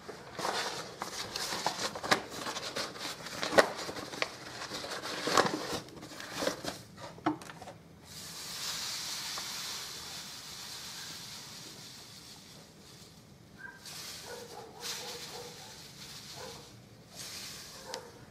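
Granulated sugar being measured out and poured: a run of clicks and light knocks, then a steady hiss of sugar granules pouring for about five seconds, and a few faint rustles near the end.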